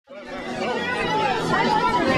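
Several people talking at once in overlapping chatter, fading in at the start.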